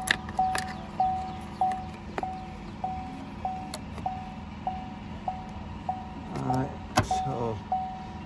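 A Chevy Cruze's interior warning chime beeping steadily, about twice a second, with the driver's door open. Sharp clicks of plastic trim and a wiring connector being handled come in between, the loudest about seven seconds in.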